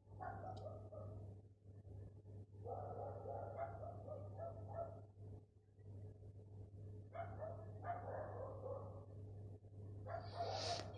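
A dog barking faintly in three bouts of repeated barks: one right at the start, one from about a third of the way in, and one near the end, over a steady low hum.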